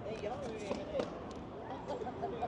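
People talking, with one sharp knock about a second in.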